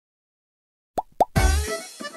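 Two quick pops, each rising in pitch, about a second in: a subscribe-button animation sound effect. Then a dance mix starts with a heavy bass beat.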